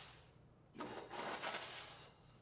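Metal scoop digging into coarse gravel aggregate in a steel pan, the stones scraping and rattling, starting about a second in.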